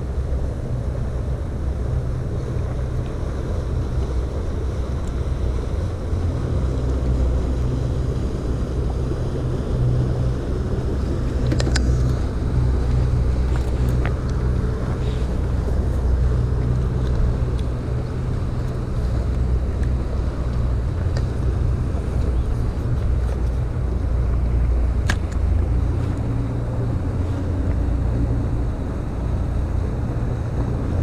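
Wind buffeting the microphone, a steady, gusty low rumble, with a few faint clicks as the angler handles the hook and reel.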